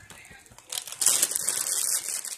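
Clear plastic bag of crackers crinkling as it is handled. The rustling starts about two-thirds of a second in and grows loud from about a second in.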